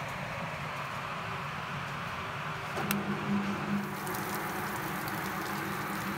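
Electric motor of a Kadıoğlu CKS80 walnut huller running with the drum empty, a steady mechanical hum. Almost three seconds in there is a click, and the hum becomes stronger and more tonal.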